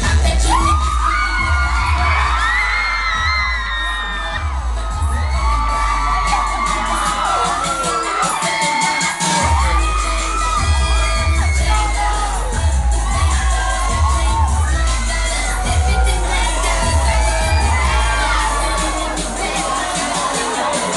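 A crowd screaming and cheering in shrill, wavering voices over loud pop music with a heavy bass beat. The bass cuts out about eight seconds in and comes back about a second later.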